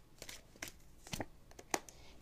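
Oracle cards being handled, with a card drawn from the deck and laid down: soft rustling with a few short, light clicks scattered through.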